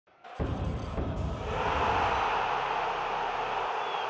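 Channel logo intro sting: a deep rumbling bass hit starts about a third of a second in and dies away after about two seconds, over a steady rushing noise that carries on to the end.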